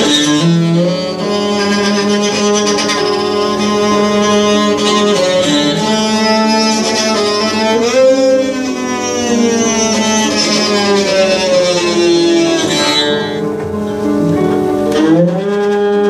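Small upright "midget bass" played with a bow in long held notes, sliding slowly in pitch about halfway through and again near the end.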